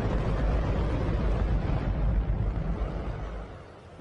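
A hydrogen-oxygen rocket engine firing on a test stand: a steady, very loud, deep rumbling noise that fades away near the end.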